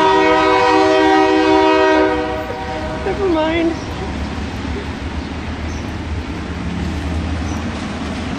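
Diesel locomotive air horn sounding one long chord of several notes, cutting off about two seconds in. A low rumble follows.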